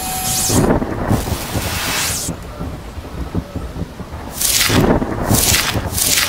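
Thunderstorm sound effect: two loud crashes of thunder, one about half a second in lasting over a second and another near the end, over a steady hiss of rain.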